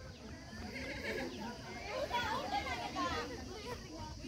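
Many girls' high voices shouting and calling over one another, players and onlookers cheering on a kabaddi raid. The calls grow busier about halfway through.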